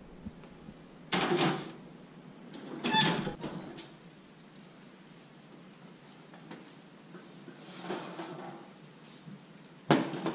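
Oven handling sounds. A graniteware roasting pan is slid onto the oven rack about a second in, and a metal clank with a brief ring follows about three seconds in as the oven door shuts. Later the oven door and rack are worked again to pull the pan out, with a sharp knock near the end.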